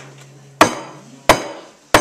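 A strummed acoustic guitar chord dying away, then three sharp percussive knocks on an even beat about two-thirds of a second apart, keeping time before the singing comes back in.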